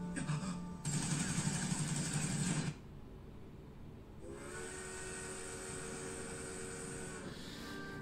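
Anime episode soundtrack at the title card: a loud rushing noise for about two seconds, then a held musical chord for about three seconds.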